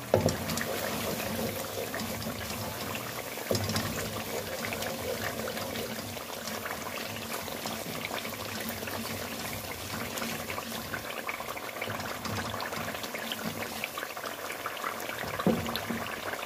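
Spiced onion, tomato and yogurt masala bubbling and sizzling in hot oil in a pan, a fine steady crackle as it is fried down with a wooden spoon stirring through it. One brief knock comes about three and a half seconds in.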